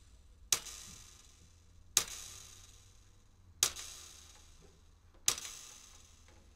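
Four sharp percussive strikes, each fading out quickly, at slightly uneven spacing of about one and a half seconds.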